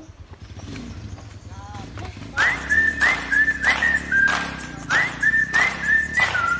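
A person whistling close to the microphone, starting about two seconds in: a run of short notes, each sliding up and then holding high, each with a puff of breath on the microphone.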